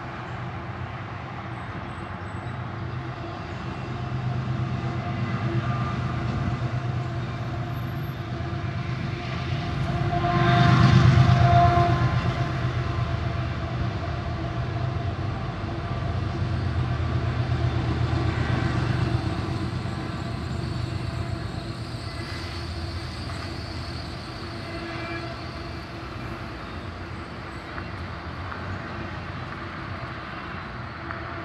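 Freight train of double-stack container cars rolling past: a steady rumble and clatter of wheels on rail, swelling loudest about eleven seconds in and again around eighteen seconds.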